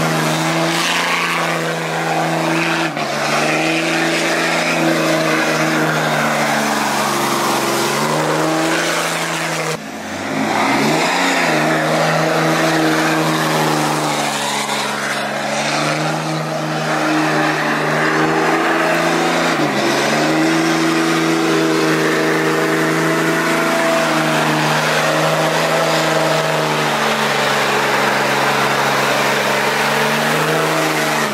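Lifted Cummins-diesel pickup doing a burnout: the engine is held at steady high revs, with a hiss of spinning tires underneath. The revs dip briefly about three seconds in and again near twenty seconds, and drop lower just before ten seconds before climbing straight back up.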